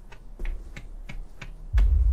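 A few scattered light clicks, then about three-quarters of the way in a sudden deep bass rumble starts and keeps going: the opening of the music video's soundtrack.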